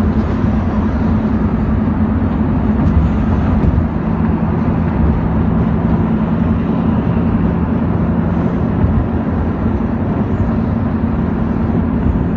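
Steady engine and road noise inside a moving car's cabin: a low, even hum under a constant rush.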